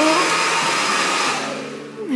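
Hair dryer blowing steadily, fading away near the end.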